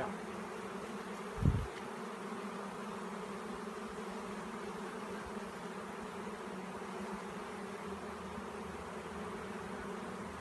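A honeybee swarm buzzing steadily, the continuous hum of many bees in the air around a box. The swarm is still unsettled and has not yet calmed down into the box. A single low thump comes about a second and a half in.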